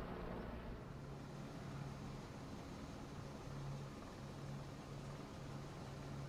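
Fire crew trucks' engines running, a steady low rumble with a low hum that swells and fades every second or so.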